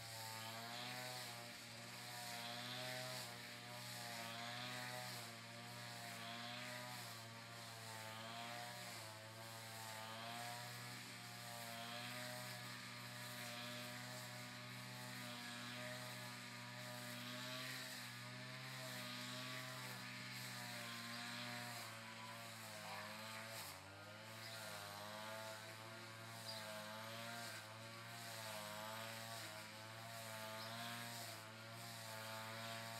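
Faint petrol brush cutter engine running steadily, its pitch wavering up and down about once a second.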